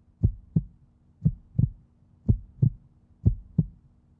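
Heartbeat sound effect: four double thumps (lub-dub), about one a second, low and evenly paced.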